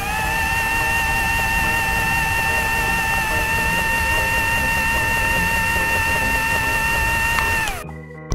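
Microwave oven running sound effect: a steady hum with a whirring hiss. Its pitch rises as it starts up, holds level, then falls away and cuts off near the end.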